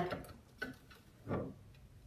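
A few faint, light ticks of hands touching the china plates on a cabinet shelf, about to pull them free of the putty adhesive that holds them.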